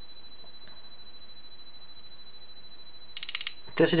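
DSC RFK5500 alarm keypad's buzzer sounding the entry-delay warning as a loud, continuous high-pitched tone. Near the end it breaks into quick pulses, the signal that the last 10 seconds of the entry delay have begun and the alarm will go off unless the system is disarmed.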